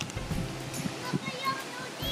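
Faint distant voices over outdoor background noise, with a few short high chirps about a second in.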